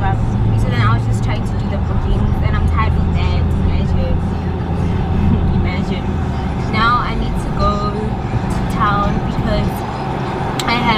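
Low steady rumble of a car's engine and road noise inside the cabin, under a woman's talking; the rumble eases about six seconds in.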